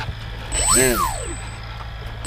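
RC plane control servo whining as it drives the control surface one way and back, a smooth rising-then-falling whine with a thin high whistle, starting about half a second in and lasting nearly a second, over a steady low hum. The servo is being exercised to check the linkages after the ailerons acted up.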